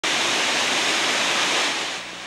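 Waterfall rushing steadily, a constant hiss of falling water that eases slightly near the end.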